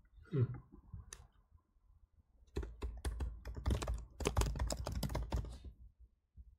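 Typing on a computer keyboard: a quick run of keystrokes from about two and a half seconds in until just before the end, after a single click about a second in.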